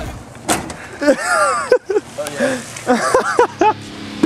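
People's voices exclaiming and talking unintelligibly, with a single sharp knock about half a second in.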